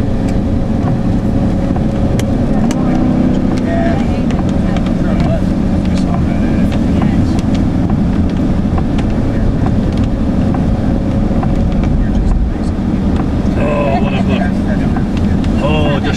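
Steady road and engine noise inside a vehicle driving on a rain-wet highway, tyres running on wet pavement, with scattered faint ticks.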